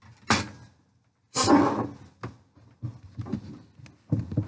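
Handling noise as the camera is picked up and moved along a kitchen counter: a sharp knock about a third of a second in, a longer rustling scrape about a second and a half in, then a few light clicks.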